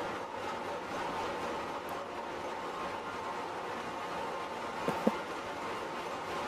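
Steady, even noise of running machinery in a container ship's engine room, with two short clicks about five seconds in.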